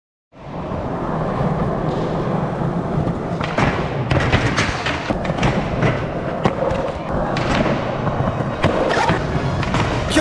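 Skateboard wheels rolling on a concrete floor and the board grinding along a metal flat bar, with sharp clacks of the board's pops and landings from about three and a half seconds in.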